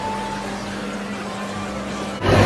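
Ambient noise of a large indoor space: a steady low hum under a wash of background noise, with a brief faint tone near the start.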